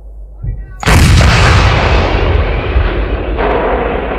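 A sudden loud boom about a second in, like an explosion or a thunderclap, used as a sound effect in the intro of a hard rock track. It dies away slowly in a long rumble, and a second wash of rumble comes in near the end.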